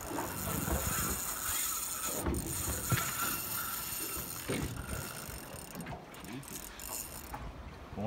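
Fishing reel being worked under load from a big fish on a heavily bent rod: a steady mechanical whir with a few sharp ticks.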